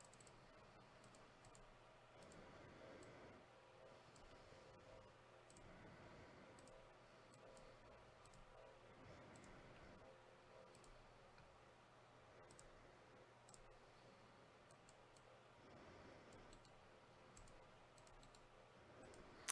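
Near silence: faint, scattered clicks of a computer mouse and keyboard over a low, steady room hum.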